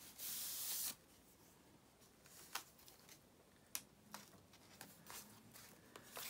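Hands rubbing glued sheets of paper flat onto a journal page: one brief swish of palm sliding over paper near the start, then quiet with a few faint paper taps and crackles.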